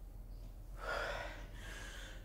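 A woman breathing hard through the mouth: a strong exhale about a second in and a softer breath after it, timed to the effort of a dumbbell lift.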